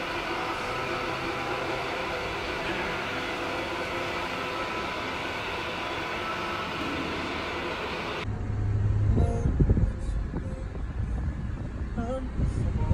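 A steady mechanical hum with several faint steady tones. About eight seconds in it gives way to a louder low rumble of a van's engine and road noise heard inside the moving cab, with irregular knocks.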